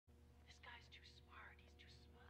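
Near silence: a faint voice comes and goes over a steady low hum.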